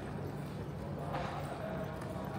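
Airport terminal ambience: a steady low hum with distant voices, and footsteps on the hard tiled floor.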